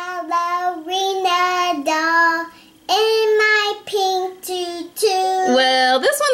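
A young girl singing a tune in long held notes that step up and down in pitch, with a brief pause about halfway through.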